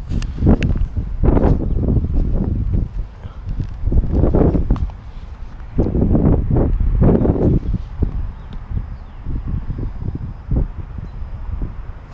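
Wind buffeting the action-camera microphone on an exposed rooftop, coming in loud rumbling gusts, the strongest about a second in, around four seconds in and from about six to seven and a half seconds.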